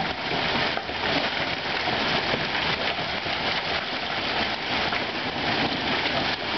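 Quarter-sized hail and rain from a thunderstorm falling on a lawn, concrete walk and street: a steady, dense patter of many small hits.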